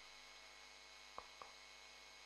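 Near silence: a faint steady electrical hum, with two small clicks close together a little past the middle.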